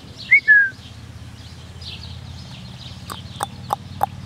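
Small birds chirping in the background, with one louder short whistle that falls in pitch about half a second in. A few sharp clicks come near the end.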